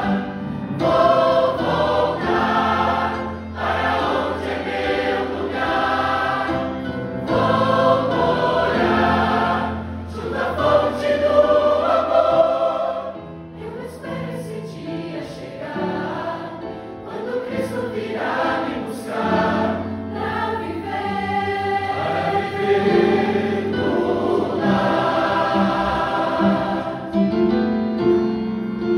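Mixed church choir of men and women singing a hymn together in sustained phrases, softening briefly about halfway through before swelling again.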